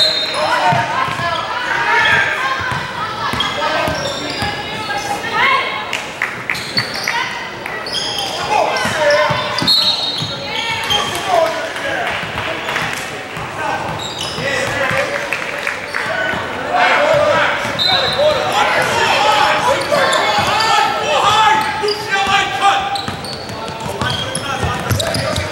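Basketball game in a gym: spectators and players talking over one another, with a basketball bouncing on the hardwood floor now and then, echoing in the large hall.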